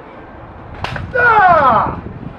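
A spear blade chopping into a ballistics-gel head and its spine, one sharp impact a little under a second in. It is followed by a man's long exclamation that falls in pitch, the loudest sound.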